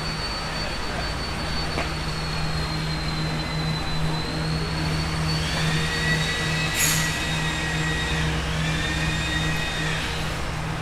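Steady low mechanical hum with faint high whining tones, and a brief click about seven seconds in.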